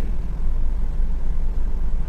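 A steady low rumble, like a motor or machine running in the background.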